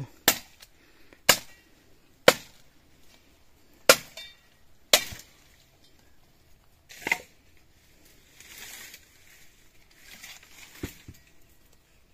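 Firewood being chopped: sharp single strikes on wood, about one a second for the first five seconds, then two more spaced further apart.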